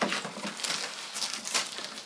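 Plastic wrapping crinkling and rustling against a cardboard box as it is handled, in a few short scratchy bursts.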